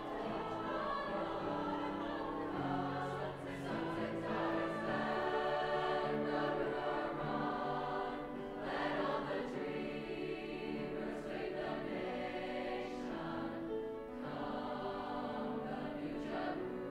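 Large mixed-voice high school choir singing in parts, moving through a series of held chords.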